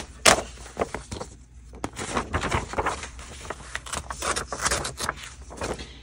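A glossy page being torn out of a paperback book along its binding: paper crackling and ripping in many short, irregular tears, with a couple of sharper snaps near the start.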